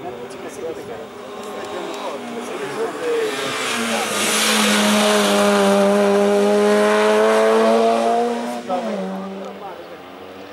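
Race car's engine at high revs, coming up the hill and passing close, the note held steady and loud for several seconds before the revs drop sharply about nine seconds in.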